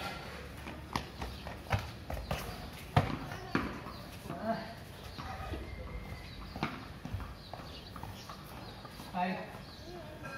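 Footsteps on hard tiles and scattered sharp knocks of a cricket ball bouncing and being hit with a bat, the loudest knock about three seconds in, with brief indistinct voices in between.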